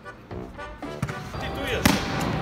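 A ball thumps twice on a sports hall floor, about a second in and more loudly near the end, under talk and background music.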